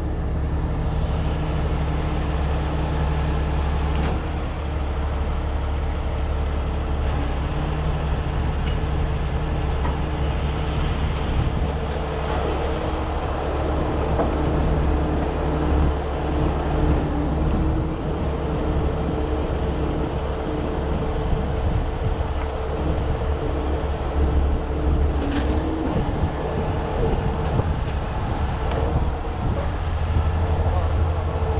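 Miller Industries Vulcan rotator wrecker's diesel engine running steadily with its hydraulic pump working as the outrigger legs are powered down onto their pads; a low steady drone with a constant whine above it and an occasional click.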